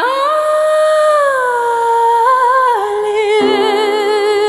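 A singer's wordless held note in a slow ballad: the voice sustains a long note, glides down about halfway through, then wavers with vibrato, and a lower note joins near the end.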